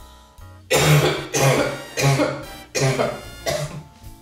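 A man coughing hard in a run of fits, about one a second, starting under a second in, over background music.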